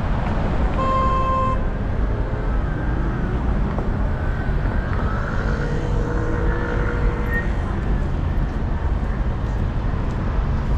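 City street traffic noise at an intersection: a steady low rumble of engines and road noise. About a second in comes one short steady beep, like a car horn toot.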